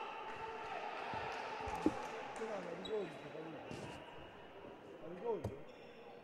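Crowd chatter and murmur in an indoor sports hall, with faint voices and two sharp thumps, one about two seconds in and one near the end.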